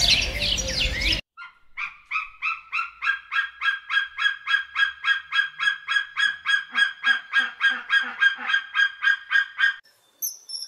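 Crested serpent eagle calling: a long run of quick, evenly spaced clipped notes, about four a second, lasting some eight seconds. In the first second a burst of small-bird chirping cuts off suddenly.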